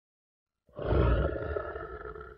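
A single deep, animal-like roar that starts abruptly about two-thirds of a second in, is loudest right after it begins, and fades out over roughly two seconds.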